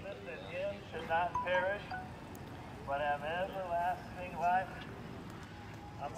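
Indistinct voice in short phrases over a steady outdoor background hum; the words are not made out.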